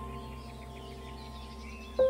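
Soft ambient new-age music holding a sustained chord, with faint birdsong chirps over it.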